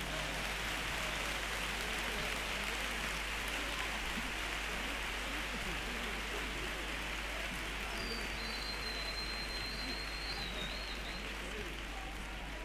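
Theatre audience applauding steadily, a dense clapping that eases off slightly near the end, after a carnival choir's song. A thin, high, wavering whistle cuts through the applause for a few seconds about two-thirds of the way in.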